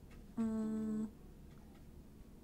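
A held note, steady in pitch, sounds for about two-thirds of a second, the last of a short run of notes of changing pitch; the rest is quiet room tone.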